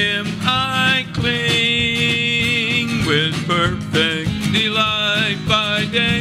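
A man singing a gospel song to his own strummed acoustic guitar, holding one long note for about two seconds partway through.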